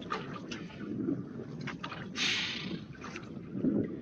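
Water lapping and splashing against a small boat's hull, with wind on the microphone and a few light knocks. A short burst of hiss comes about two seconds in.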